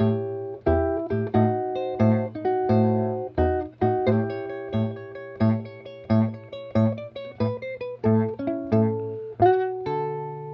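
Archtop electric guitar played fingerstyle: a blues intro with a steady low bass note struck about twice a second under a moving melody and chord line, ending on a held chord near the end.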